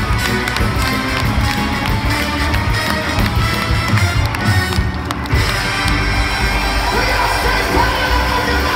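A live soul band playing loud: electric guitar, keyboards and drums.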